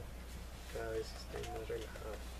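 Pigeons cooing: short, low coos, one just under a second in and a longer one in the second half.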